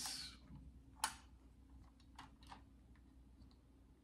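Small clicks from a 1/18 diecast model car being turned over and handled: one sharp click about a second in, then two fainter ones a little after the middle, otherwise quiet.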